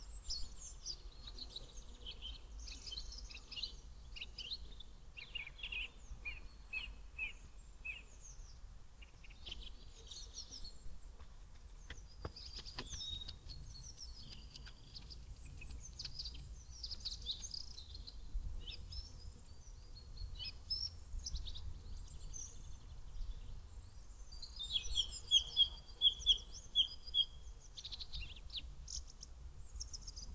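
Small woodland birds singing and calling, a busy mix of high chirps and trills. Near the end one bird gives the loudest run, about seven evenly spaced notes. A steady low rumble runs underneath.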